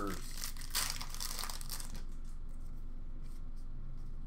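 Upper Deck hockey card pack wrapper being torn open and crinkled: a burst of rustling and tearing in the first half, then quieter handling.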